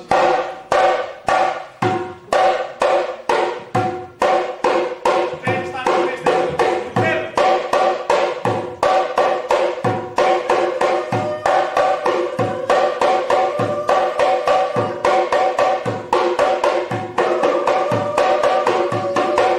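Assamese dhol barrel drums played solo in a fast, even rhythm: sharp strokes ringing with the tuned heads' pitch, over deep bass thumps recurring about once a second. The drumming comes in loud right at the start after a quieter moment.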